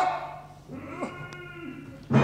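Short exclaimed words from a performer's voice in stage dialogue, one with a steep downward slide about halfway through.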